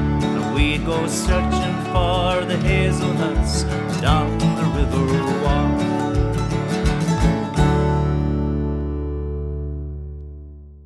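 Small acoustic folk band with strummed acoustic guitars playing the instrumental ending of a song, closing on a final chord about seven and a half seconds in that rings out and slowly fades.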